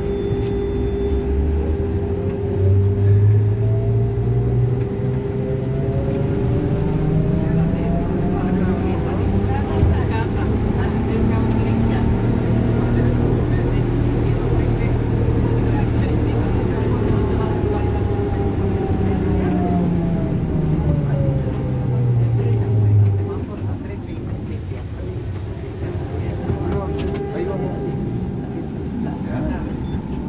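Ikarus 415T trolleybus's electric traction drive heard from inside the bus: a whine rises in pitch as it gathers speed, holds steady while cruising, then falls as it slows and cuts off suddenly about 23 seconds in. A steady electrical hum runs under it throughout.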